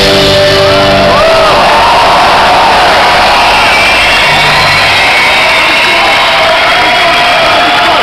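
Rock concert crowd cheering and shouting at the end of a song, with rising and falling high calls among the noise. The band's bass guitar holds a few low notes in the first second and a half and once more about four seconds in.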